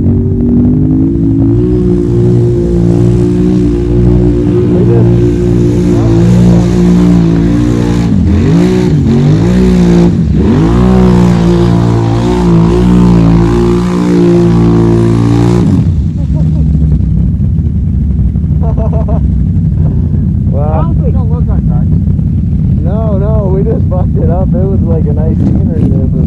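Can-Am Renegade XMR 1000R ATV's V-twin engine held at high revs, wheels spinning through deep mud, with a hiss of flying mud over it. About halfway through the revs dip and climb twice, and a little before the end the engine note drops suddenly to a lower, rougher run.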